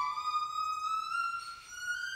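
Violin playing alone: one sustained bowed note sliding slowly and steadily upward in pitch, a long glissando.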